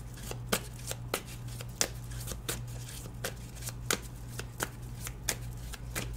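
A deck of angel cards being shuffled by hand: a run of irregular short clicks, a few a second, quieter than the talk around it.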